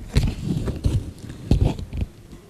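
Crackly rustling and several soft, irregular knocks from a stack of stiff paper flashcards being handled and shuffled in the hands.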